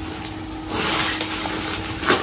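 Gift bag rustling as it is opened and rummaged through, a dense rustle that starts under a second in.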